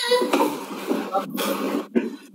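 A person's breathy, unpitched vocal sounds in two stretches, about a second and then half a second long.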